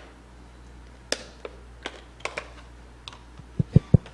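Handling noise from a handheld microphone being picked up and readied: scattered light clicks, then three low thumps close together near the end as it is knocked or tapped before use.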